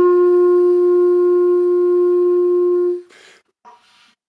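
1940s Evette Schaeffer wooden clarinet holding one long note, which lifts slightly in pitch at the start and stops about three seconds in. A short breathy noise follows.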